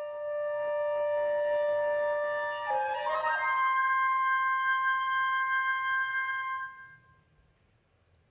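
Flute and clarinet playing long held notes together, moving up to a new, higher pair of notes about three seconds in and holding them until they die away about seven seconds in.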